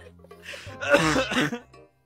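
A person's voice making a non-speech vocal sound, like throat clearing, from about half a second in and lasting about a second, over faint background music.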